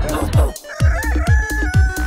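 Dance-pop track with a steady kick drum. After a short break about half a second in, a rooster-style cock-a-doodle-doo crow rises and then holds one long note for about a second over the beat.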